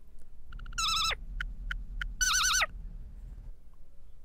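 Cartoon whistle sound effect: two short warbling tones, each dropping in pitch at its end, with three short pips between them, over a low hum.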